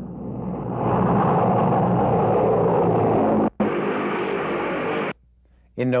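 A loud rumbling roar swells up over the first second and holds steady. It breaks off abruptly about three and a half seconds in, returns a little quieter, and stops short just after five seconds.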